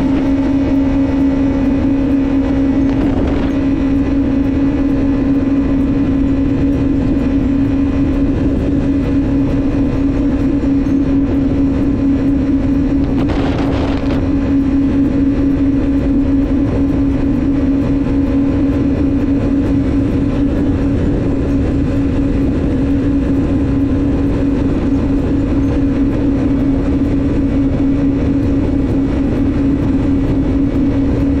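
Jet ski engine running as the craft cruises over the water, a loud, steady drone that holds one pitch. A brief rush of noise breaks over it around halfway through.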